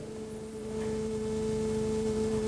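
A steady electronic hum-like tone on the broadcast sound, two pitches an octave apart, slowly getting a little louder. It comes while the remote studio's audio has dropped out and the guest cannot be heard.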